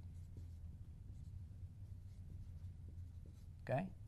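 Dry-erase marker writing on a whiteboard: faint short strokes and taps as letters are drawn, over a low steady hum.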